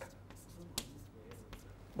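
Chalk on a blackboard: a few short taps and light scrapes as a short expression is written, the sharpest click a little under a second in.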